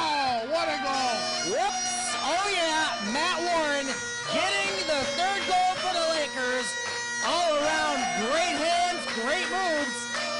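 Bagpipes playing, their drone holding one steady note, with excited voices shouting over them.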